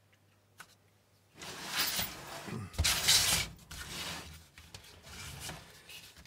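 A faint click, then rubbing and scraping handling noise from a little over a second in, loudest around three seconds in and tailing off: hands shifting the steel pedal box.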